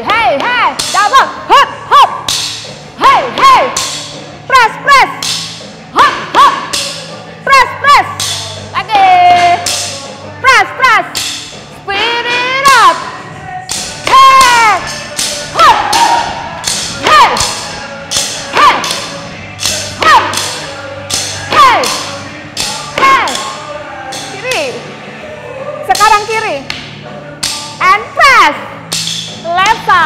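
Upbeat workout music with a steady bass line, over which Ripstix exercise drumsticks strike the floor and one another in sharp knocks in irregular clusters, along with short shouted calls.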